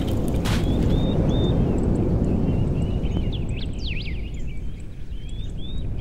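Inflatable snow tube sliding fast down a snow-covered ski jump hill: a steady low rumble of wind buffeting the microphone and the tube running over the snow. Over it there are a few short high-pitched chirps and squeaky glides.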